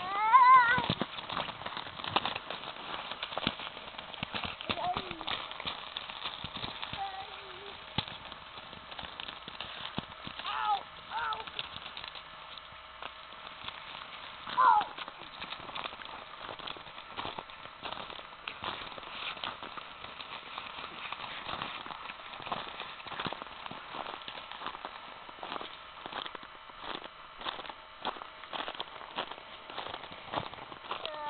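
A child's high squeal right at the start, then a few short cries about ten and fifteen seconds in, over a constant crackle of crunching clicks from movement in snow.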